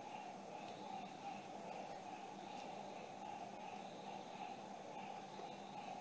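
Quiet, steady background hiss of room tone, with no distinct knocks or clicks.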